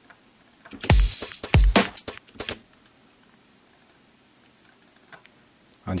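A drum-rack pattern plays back for about two seconds, starting just under a second in: deep kick drums with bright hi-hat and cabasa hits over them. It then stops, leaving only faint room tone.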